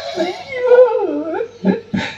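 A drawn-out whining voice, wavering and gliding down and back up in pitch for about a second, like a dog whimpering.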